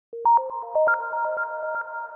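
Short electronic intro jingle: a fast run of chiming notes, about eight a second, that ring on and stack into a held chord.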